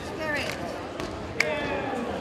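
Voices chattering in a large gym, with one sharp, loud thump about one and a half seconds in, a ball bouncing on the hard gym floor.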